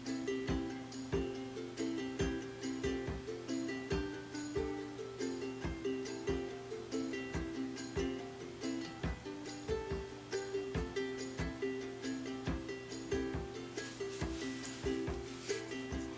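Background music: a light plucked-string tune with a steady rhythm, ukulele-like.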